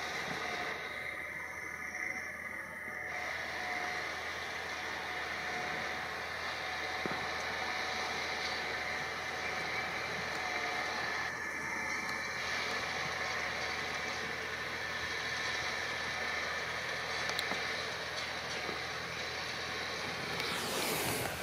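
Landini farm tractor running steadily under load as it pulls a disc harrow through ploughed soil.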